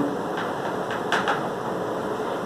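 Chalk tapping and scratching on a blackboard as a word is written, over a steady hiss.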